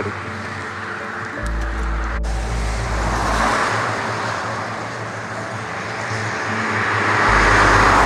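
Cars passing on a rain-wet road, their tyre hiss swelling as a car comes close near the end, under background music with held low notes.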